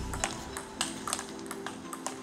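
Table tennis balls striking paddles and the table in a practice rally: several sharp clicks, irregularly spaced, over soft background music.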